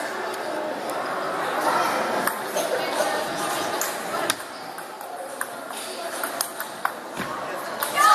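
Table tennis ball striking bats and table during a rally: a series of sharp, irregularly spaced clicks, over background crowd chatter.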